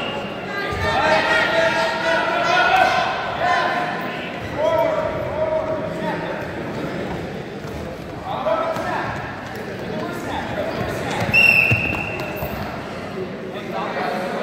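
Referee's whistle blown once, a short high note about three quarters of the way in, stopping the wrestling bout. Around it, voices calling out in a large echoing gym and thuds of the wrestlers on the mat.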